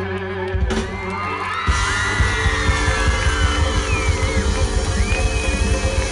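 Live pop-rock band with electric guitars and drum kit playing; after a brief thinner passage the full band with drums comes back in about two seconds in. High whoops from the crowd rise over the music.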